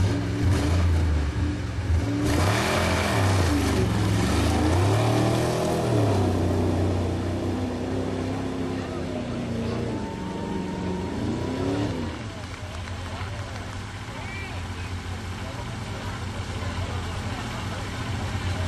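A 1976 Ford F-150 pickup's engine revving hard, its pitch rising and falling again and again as the truck churns through a mud pit. After about twelve seconds it eases off to a lower, steadier sound.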